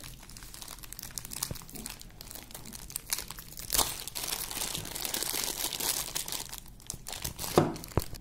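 Thin clear plastic bag crinkling and crackling as a power adapter is unwrapped from it by hand, with a sharper crackle a little before halfway and busier rustling after it.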